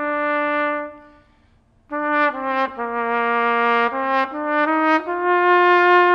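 Unaccompanied trumpet playing a slow melody: a held note that fades away about a second in, a short pause for breath, then a phrase of several notes moving up and down in pitch.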